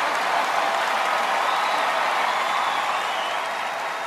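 Theatre audience applauding steadily after a comedy punchline, easing off slightly near the end.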